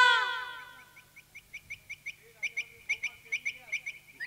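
A long held vocal note fades out over the first second. Then a small bird chirps rapidly, about five short chirps a second, to the end.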